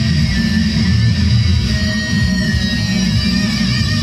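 Electric guitar played through an amplifier in a heavy rock song, with a dense low end throughout and held notes in the upper range.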